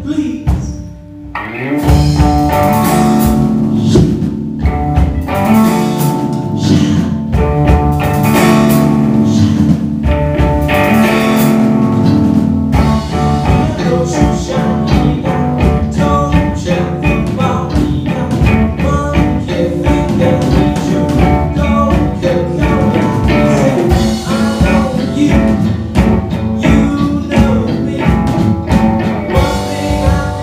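Live rock band playing a song: drum kit, electric guitars and bass, with a male singer. The band drops out briefly near the start and comes crashing back in about a second and a half in, then plays on steadily.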